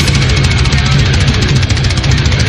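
Heavy metal recording: loud distorted electric guitars over rapid, driving drumming, with no vocals yet.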